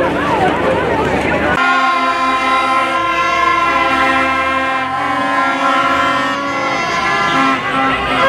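Plastic stadium horn (vuvuzela-type) blown in one long held note for about six seconds, wavering slightly in pitch and breaking briefly a couple of times near the end. Before it, for the first second or so, a crowd of fans is shouting and talking.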